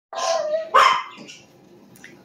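A dog barking twice in quick succession, the second bark the louder.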